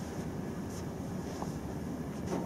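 Steady room background noise, a low hum and hiss, with a couple of faint small clicks or rustles.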